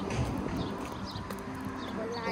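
Footsteps on asphalt.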